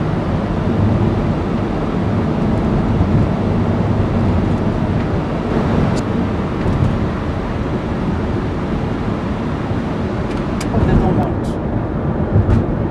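Steady car road and engine noise heard from inside the cabin while driving at speed, with one sharp click about halfway through.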